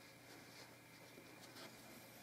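Near silence, with a few faint brief rustles of needle, thread and wool fabric as a seam is hand-stitched.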